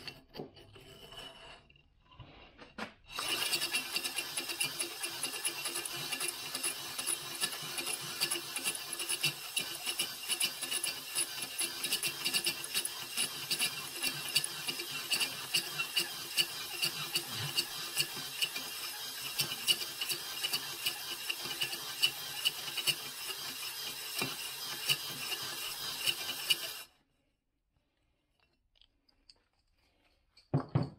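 Drill-driven, spring-loaded stone cylinder hone spinning in a compressor cylinder bore lubricated with WD-40: a continuous rasping scrape that starts about three seconds in, after brief handling of the tool, and cuts off suddenly a few seconds before the end.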